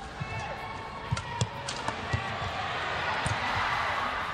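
Badminton rackets striking a shuttlecock in a rally, sharp hits about once a second. Arena noise rises near the end.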